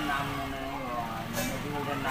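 A man's voice speaking, with no other clear sound standing out.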